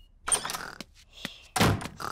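Cartoon sound effect of a front door being opened and shut: a rustle, a couple of small clicks, and a heavy thunk about one and a half seconds in.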